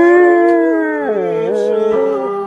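German Shepherd howling along to a song: one long drawn-out note that slides down about a second in and rises again, with the music underneath.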